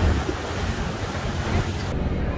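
Wind buffeting the microphone and water washing past the hull on the open deck of a moving harbour boat, a steady low rumble under a hiss. The hiss drops away suddenly just before the end.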